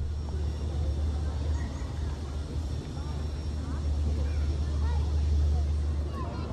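A steady low rumble with faint, scattered voices of people talking in the background.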